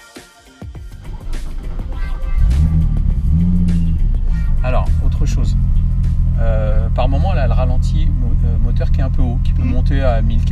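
Venturi 260 LM's turbocharged V6 engine heard from inside the cabin: it comes up about two seconds in with a brief rise and fall in engine speed, then idles steadily and loudly at a high idle of around 1,500 rpm.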